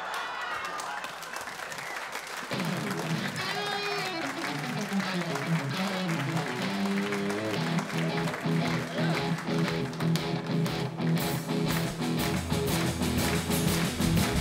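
Audience laughter and applause, then a live band with guitars starts a song's instrumental intro about two and a half seconds in, under the continuing clapping, with bass coming in strongly near the end.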